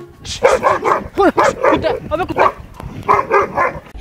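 A person faking a dog's barking: a rapid run of loud barks and yelps, a short pause, then a few more barks near the end.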